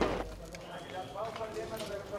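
Men's voices talking faintly in the background of field footage, after a brief noisy burst at the very start.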